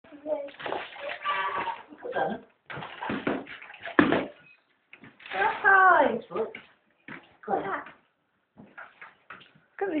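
Mostly people's voices, talking in short, broken bursts, with a falling exclamation about halfway through.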